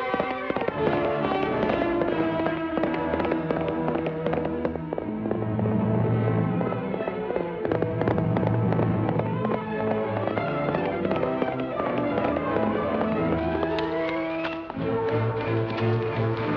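Orchestral film score with many sharp percussive hits throughout. A rising figure climbs from about twelve seconds in and breaks off with a short drop just before the end.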